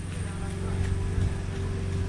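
A steady low engine hum carries on without a break, with no sudden events.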